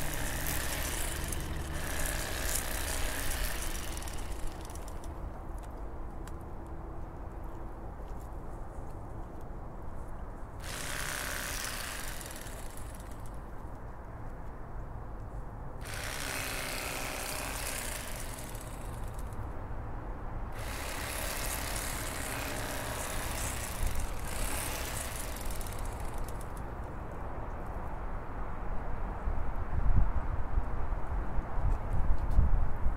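Bubba Blade electric fillet knife running, its motor humming steadily as the reciprocating blades cut through a crappie fillet around the ribs. Several stretches of louder, brighter buzz come and go as the blade works.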